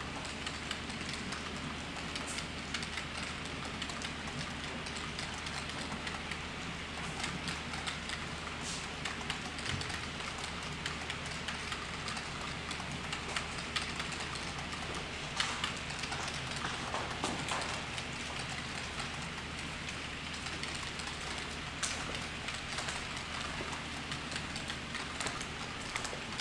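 Model railroad freight cars rolling past on the track: a steady patter of many small wheels clicking over rail joints, over a low steady hum.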